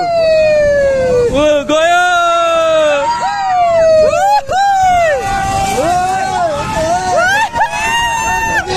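Riders on a Break Dance fairground ride shouting and whooping, several voices overlapping in long calls that slide up and down in pitch.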